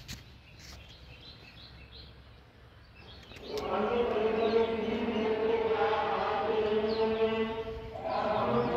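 Devotional chanting by a group of voices begins about three and a half seconds in and carries on loudly, holding a steady, sustained tone. Before it there are only faint bird chirps.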